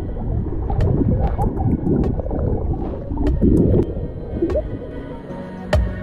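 Seawater gurgling and bubbling around a camera held at and under the water surface, muffled and churning, with music underneath. A sudden thump near the end.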